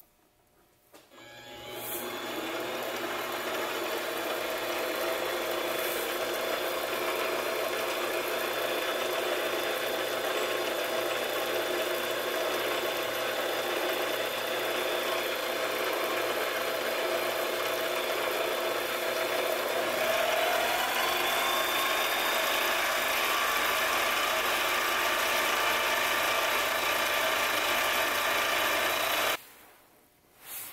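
Grizzly mini lathe spinning up and running steadily with a whine from its motor and gears. About twenty seconds in the whine climbs a little in pitch and gets slightly louder, then it cuts off suddenly near the end.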